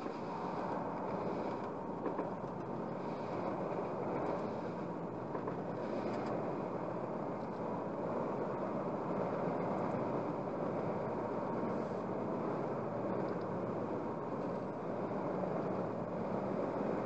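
Steady road and tyre noise with engine hum from a car cruising at about 73 km/h on a motorway, heard from inside the cabin.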